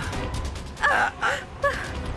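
A woman gasping in alarm, with short breathy gasps about a second in, over background music.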